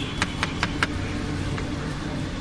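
Knife chopping a cucumber on a cutting board: about four quick chops in the first second, then the chopping stops. A steady low rumble of traffic runs underneath.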